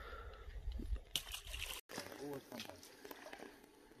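Faint, indistinct voices in the background over a low rumble, with a brief dropout about two seconds in and a few light clicks.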